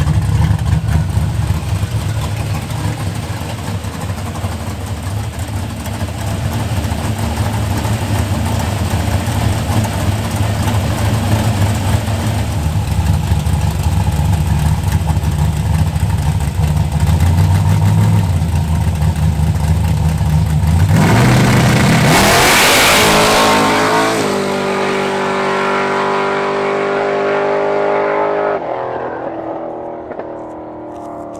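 Pontiac Firebird drag car's engine idling at the start line, with a few light blips of the throttle. About 21 seconds in it launches at full throttle: the pitch rises sharply into a loud burst, then the engine holds a steady wide-open pitch and fades near the end as the car pulls away.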